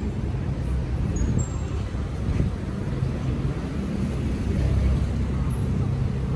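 Steady low rumble of city traffic, with a tram drawing up close by and the rumble growing louder a little after halfway.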